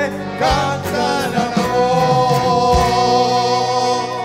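Male vocalist singing with a live folk band of accordion, guitars, bass and drums; in the second half the music settles onto a long sustained chord.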